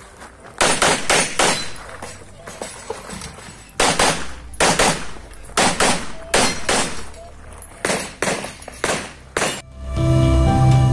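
A CZ Shadow 2 9 mm pistol fired in rapid strings, about twenty shots in all. They come in pairs and runs a quarter to a third of a second apart, with short pauses between strings as the shooter moves between targets.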